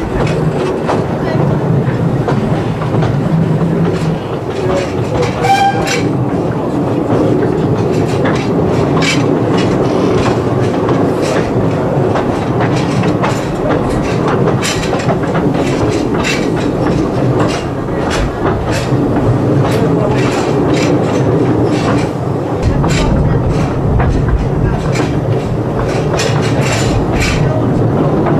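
Narrow-gauge railway carriage running over the track at low speed: a steady rumble with irregular sharp wheel clicks over the rail joints. A brief high-pitched tone sounds about five and a half seconds in.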